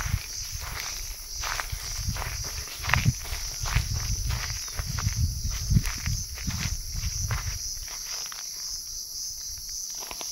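Footsteps crunching through dry grass and fallen pine needles on the forest floor, an irregular walking pace that thins out near the end. A steady high insect buzz runs underneath.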